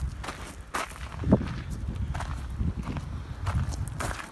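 Footsteps on loose gravel, an irregular series of crunches.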